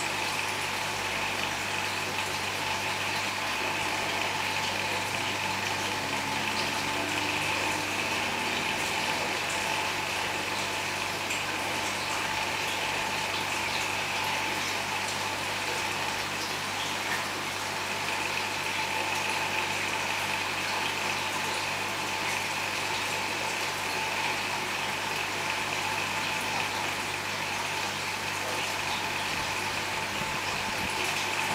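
Aquarium filter and pump running, with a steady rush of moving water over a low hum.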